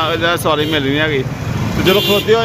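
A man talking, over the steady low running of the motor rickshaw he is riding in.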